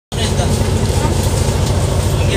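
Steady low engine rumble and cabin noise inside a coach bus, starting suddenly out of silence.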